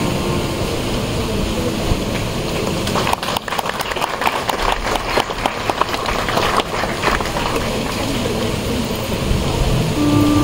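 Steady noise of a standing crowd of guests. For a few seconds in the middle, a dense run of quick, irregular clatter rides over it.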